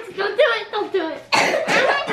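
People's voices close by, broken about a second and a quarter in by a sudden cough.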